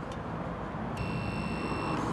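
Apartment building intercom panel giving one steady high electronic buzz, about a second long, as its call button is pressed, over low outdoor traffic rumble.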